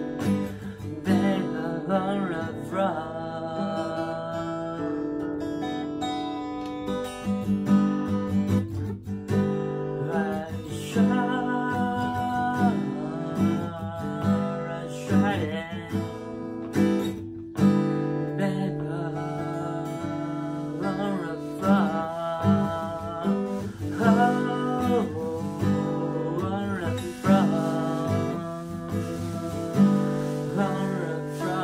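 A man singing to a strummed acoustic guitar, with a brief break in the sound about halfway through.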